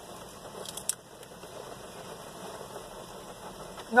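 Someone chewing a crunchy potato chip with the mouth closed: a few sharp crunches about a second in and again near the end, over the steady hum of a car idling.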